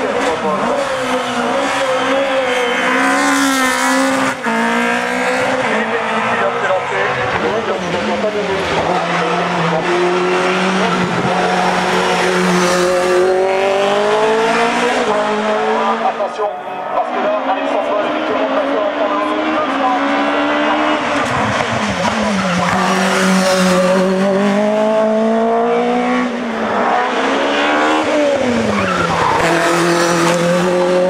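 Dallara F393 Formula 3 single-seater racing uphill, its engine revving hard. The pitch climbs through each gear and drops between the climbs, over and over through the run.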